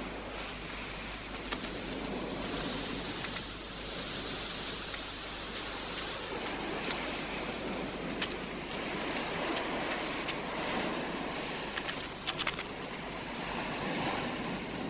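Sea surf washing against rocks: a steady rushing noise that swells and eases, with a few faint clicks.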